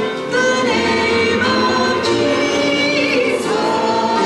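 Church congregation singing a hymn together, with a woman's voice at the microphone carrying the melody in held notes.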